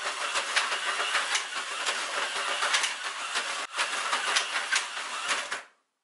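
Micro Scalextric slot cars running round a plastic track: small electric motors whirring with a rattling clatter of many quick clicks, with a brief break a little after halfway. It cuts off suddenly near the end as the cars crash.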